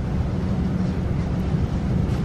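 Steady low rumble from the soundtrack of a light-projection show on a scale model.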